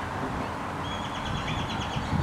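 A bird trilling, a rapid run of short high notes starting about a second in, over a steady low rumble of outdoor background noise.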